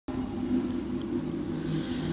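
A steady low drone of several held tones, the background accompaniment laid under a naat recitation.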